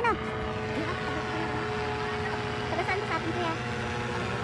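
A steady engine drone at an even pitch, with faint voices of people nearby.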